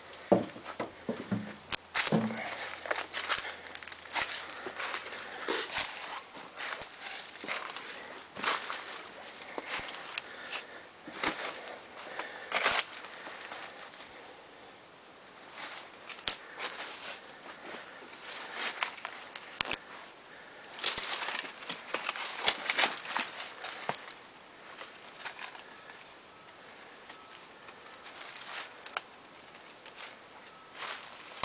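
Footsteps through dry fallen leaves: irregular crackling steps that come in spells and thin out to lighter rustles near the end.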